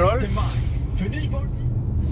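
Steady low road rumble inside the cabin of a moving Lynk & Co 01 SUV, with a voice talking over it briefly near the start and again about a second in.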